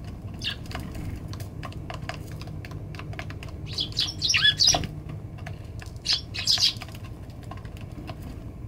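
Eurasian tree sparrows pecking at grain on a wooden feeding tray: a quick, irregular patter of beak taps, with short chirps about four seconds in and again around six seconds, the chirps the loudest sounds.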